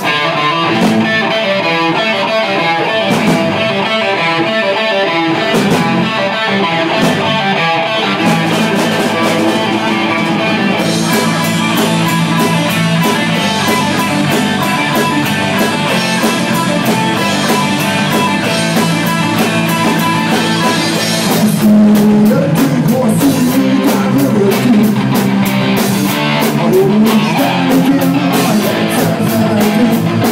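Live rock band playing the instrumental opening of a song on electric guitars and drum kit. A picked electric guitar comes first, a steady low note joins about eight seconds in, and drums and cymbals come in at around eleven seconds. The band gets louder a little past twenty seconds.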